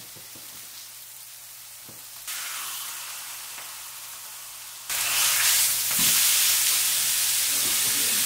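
Sirloin steak searing in olive oil in a frying pan, a steady sizzling hiss that jumps louder twice, about two and five seconds in.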